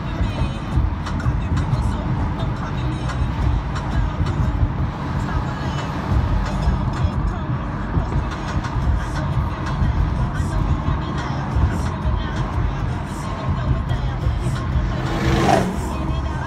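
Music with voices playing over a car's radio inside the cabin, on top of the low rumble of the car driving in traffic. A short rising whoosh comes near the end.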